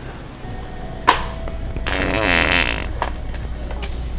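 Loud, sputtering wet fart sound from a Sharter fart-noise prank device, lasting about a second, with a sharp click about a second before it.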